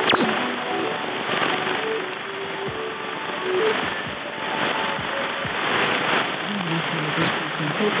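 Weak shortwave AM broadcast on 5915 kHz received on a software-defined radio in synchronous AM mode: faint programme audio buried in steady band noise, with a few sharp static crackles.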